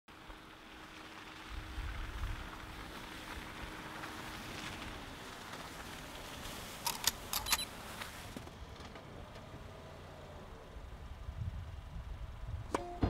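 A Honda CR-V driving slowly up on a slushy road, with quiet engine rumble and wet tyre hiss. A few sharp clicks come about seven seconds in.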